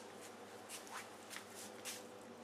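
Cat chewing on a wedge of melon: about five short, faint crunching clicks in quick succession in the second half.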